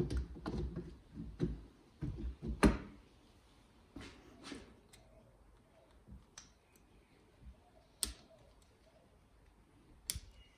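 Aluminium two-stroke cylinder being handled and slid down over its studs onto the crankcase: a run of metal clicks and knocks, the loudest near three seconds in. After that, a few sparse small clicks as fingers work on the power valve linkage in the cylinder's side housing.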